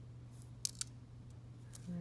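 A few light clicks of small rhinestone crystals against a plastic tray as one is picked up with a crystal pick-up tool, over a steady low hum.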